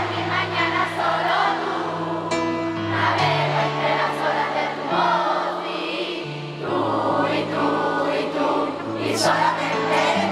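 Live pop ballad played on keyboard with the band, held bass notes changing every second or two, with singing over it.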